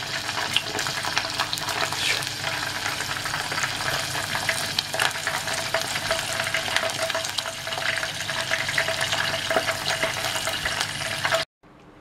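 Cicadas deep-frying in a pot of oil: a steady sizzle with dense crackling, cutting off suddenly near the end.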